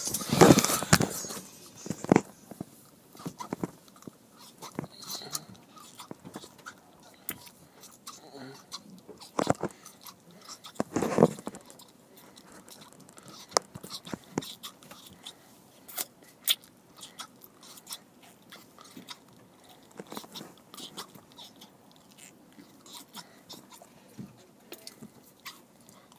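Scattered small clicks, taps and rustles inside a car cabin. The loudest come in a cluster in the first second and again around ten to eleven seconds in, with fainter irregular ticks between.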